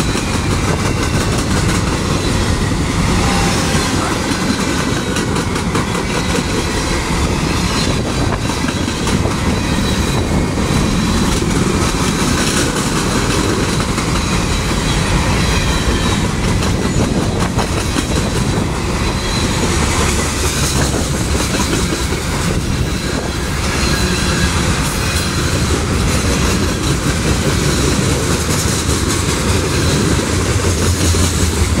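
Freight cars of a manifest train (boxcars and covered hoppers) rolling past close by: a loud, steady rumble of steel wheels on rail with rapid clicking over the joints, and a faint high squeal from the wheels coming and going.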